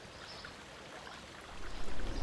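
Faint outdoor water sound, a soft, even trickling wash from a fen waterway. A low rumble builds near the end.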